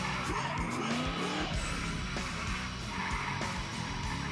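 Rock music with electric guitar, mixed with the in-cabin sound of a V8-swapped Mazda RX-7 FD drifting: the engine's pitch glides up and down as the throttle is worked, and the tyres squeal.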